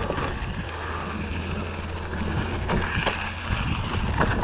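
Kona Satori mountain bike rolling fast down a dirt and rock trail: a steady rumble of tyres on the ground with light rattles and knocks from the bike, and wind buffeting the camera microphone.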